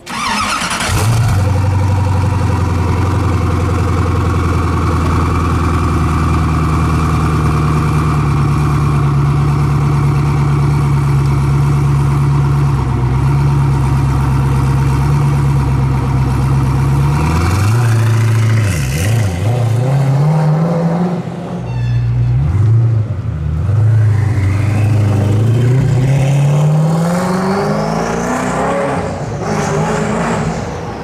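Koenigsegg Agera's twin-turbo V8 firing up at the start and settling into a steady idle. Around two-thirds of the way in it gives a few revs, then the pitch climbs near the end as the car accelerates away.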